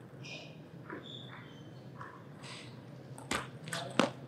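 Table tennis ball struck by bat and bouncing on the table as a rally starts: a few faint taps, then a sharp click about three seconds in and another, louder, at the end, in an otherwise quiet hall.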